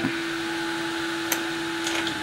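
DIY diode-laser engraving machine running mid-job, its motors making a steady even hum, with two faint ticks partway through.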